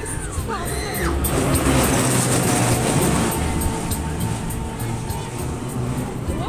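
Steady rush of air over the microphone on a fast-turning Ferris wheel, with music playing underneath.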